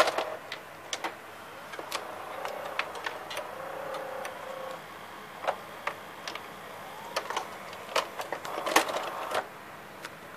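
Samsung VR5656 VCR's tape mechanism running through an eject cycle, its loading parts and cam gears clicking. A small motor whines faintly in the middle, and there is a denser run of clicks near the end.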